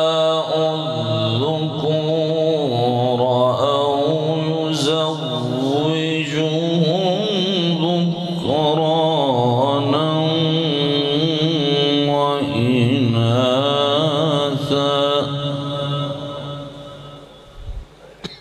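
A man's melodic Quran recitation (tilawat): long, ornamented sung phrases with a wavering, sliding pitch, trailing off near the end.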